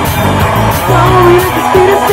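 Live rock band playing loudly: electric guitar, bass and drums with cymbal strokes, held notes bending in pitch over the beat.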